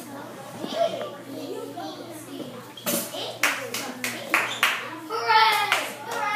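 Children's voices in a classroom, then a quick run of about six sharp hand claps halfway through, followed by a child's voice.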